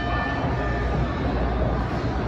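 Boxing ring bell ringing out to start the round: its single ringing tone, struck just before, fades away in the first half second. Under it runs the steady rumble and murmur of a crowded gym hall.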